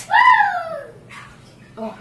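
A young child's high-pitched squeal: one loud call that rises slightly and then falls away in under a second.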